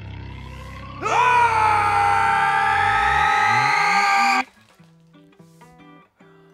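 Two men screaming at each other in one long held scream over a low, rising musical drone. The scream and drone cut off suddenly a little after four seconds, leaving soft plucked guitar notes.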